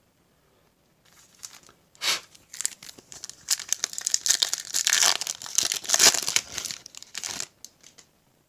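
Foil wrapper of a Topps Chrome Update hanger pack being torn open and crinkled by hand: a crackling rustle that starts about two seconds in, is densest in the middle and stops just before the end.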